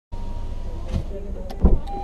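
Steady low rumble inside a parked car, with a couple of light clicks and then a heavy thump about one and a half seconds in, as from the car's body or a door.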